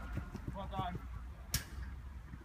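A futsal ball struck once with a sharp thump about one and a half seconds in, with brief faint shouting from players before it.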